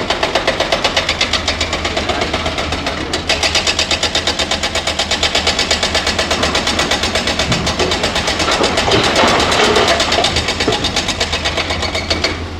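Diesel engines of large hydraulic excavators working, a steady fast, even throb. Around nine seconds in a louder rush rises over it as the bucket's load of rock goes into the dump truck.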